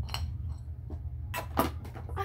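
A jar being handled: a light click at first, a few faint taps, then a louder clatter about one and a half seconds in.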